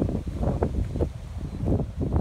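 Wind buffeting a phone microphone: an uneven low rumble that rises and falls in gusts.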